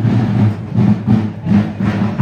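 Drums of a marching parade band beating a steady rhythm, with the crowd of onlookers around it.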